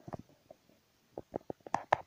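Handling noise from the recording phone being moved into position: a scattered run of short taps and knocks, sparse at first, then coming closer together and louder near the end.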